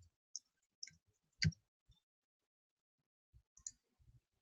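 Four faint computer keyboard keystrokes, spaced irregularly, the third the loudest.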